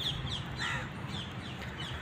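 Birds calling outdoors: a quick run of short, falling calls, several a second, over steady outdoor background noise.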